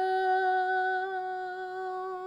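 A man humming one long, steady note to imitate a held string-pad note in a song.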